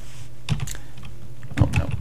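Computer keyboard typing: a few separate keystrokes, spaced irregularly.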